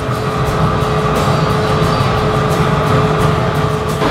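Steady roar of a gas-fired glassblowing furnace (glory hole), with a thin steady hum underneath.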